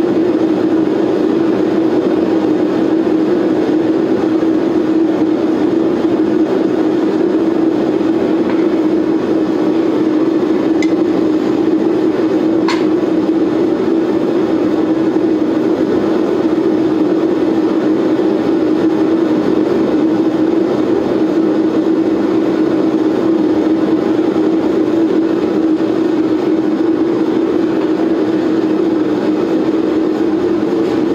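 Gas-fired knifemaking forge running with a steady rushing noise and a low hum, its burner heating a Damascus blade toward red hot. Two light ticks near the middle.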